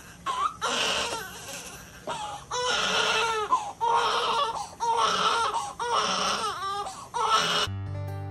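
Newborn baby crying: a string of wavering cries, each about a second long, with short catches of breath between. Near the end the crying stops and acoustic guitar music begins.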